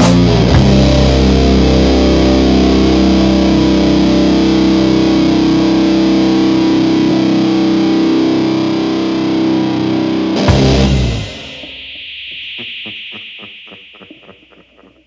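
Stoner/doom metal band ending a song: heavily fuzz-distorted electric guitars and bass hold a long, loud sustained chord, hit once more a little after ten seconds, then stop abruptly. What remains is a fading high ringing tone with a faint pulsing tail.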